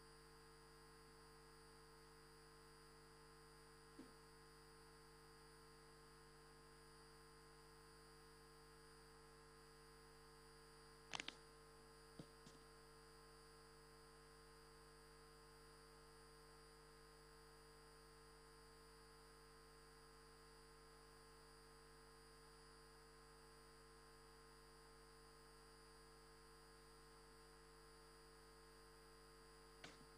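Near silence: a faint, steady electrical hum, broken by a few brief clicks, the loudest about eleven seconds in.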